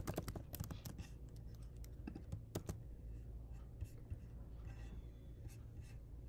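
Computer keyboard typing faintly: a quick run of keystrokes in the first second, then a few scattered single clicks.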